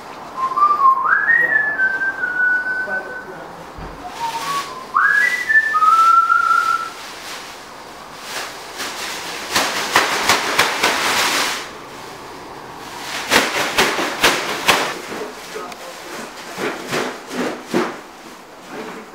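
A person whistling a short rising tune twice, each phrase climbing to a high note and then holding a little lower. Several seconds of bursts of hissy noise follow.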